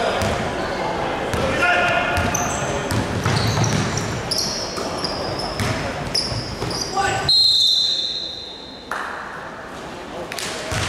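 Basketball game on a hardwood court in a large echoing hall: the ball bouncing, sneakers squeaking in short high chirps, and players calling out. About seven seconds in, a loud high-pitched squeal lasting about a second stands out, after which play goes quieter.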